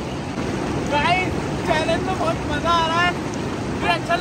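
Steady rush of a fast, shallow mountain river running over rocks and white-water rapids, with voices calling out briefly over it three times.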